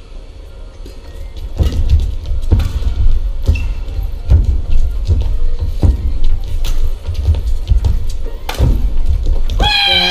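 Badminton rally: rackets hit a shuttlecock sharply about once a second, with a low rumble of court noise underneath.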